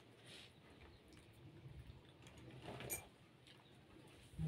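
Near silence with a faint click about three seconds in.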